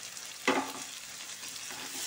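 Chopped onion, garlic and ginger frying in oil in a nonstick pan: a steady sizzle, with one sharp knock about half a second in.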